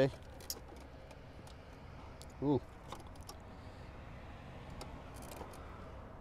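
Faint clicks and light rattling of plastic wiring-harness connectors being handled in the DME box, with a short spoken "ooh" about two and a half seconds in.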